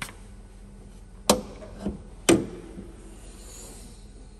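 Hood of a 2022 Mercedes-Benz GLE 350 being released and lifted open: a click, then two loud metallic clunks about a second apart with a smaller knock between them, the second ringing briefly.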